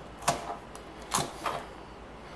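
Kitchen knife chopping bird-eye chillies on a cutting board: three or four separate, irregularly spaced knife strikes.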